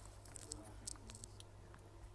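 Faint scattered light clicks and taps of multimeter probe tips being set back onto a smartwatch's metal charging pins, with small gloved-hand handling noises, over a low steady hum.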